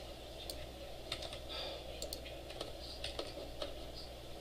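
Irregular light clicking of a computer keyboard and mouse as a block of code is selected, cut and pasted, over a steady low room hum.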